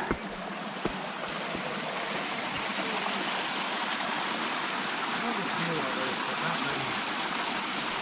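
Steady rush of running water from a rocky creek.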